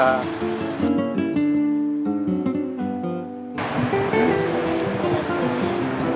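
Background music: acoustic guitar picking a melody of single notes. About three and a half seconds in, outdoor background noise joins beneath the guitar.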